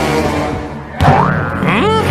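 Music with a cartoon boing sound effect: a sudden hit about a second in, then a springy pitch glide rising near the end.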